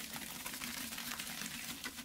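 Wet cement-like mud slopping out of a tipped bowl and splattering in clumps onto a wet pile, a dense crackle of small wet splats.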